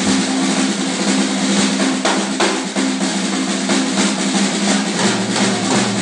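Drum kit played fast as a solo: busy snare strokes and cymbals in quick succession, over a steady held low note underneath.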